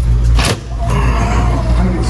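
Wind rumbling on the microphone on the way out through a glass entrance door, with a single knock about half a second in.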